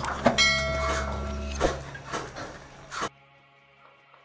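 Cyma 701B spring bolt-action airsoft sniper rifle fired once: a sharp crack followed by a metallic ringing that lasts about a second. Another sharp knock comes about a second and a half in, and the sound cuts off abruptly about three seconds in.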